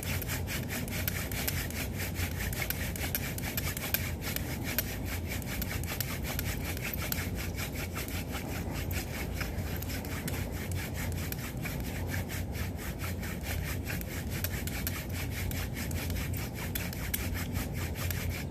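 Wooden hand-drill spindle spun back and forth between the palms in the notch of a wooden hearth board: a quick, even rhythm of wood rubbing on wood. This is the friction-fire drilling that builds up an ember coal in the notch.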